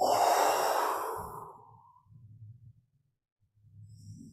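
A woman's long, forceful exhale through pursed lips, a breathy blowing sound that starts loud and fades out over about two seconds, done as a breathing exercise to blow tension out of the stomach.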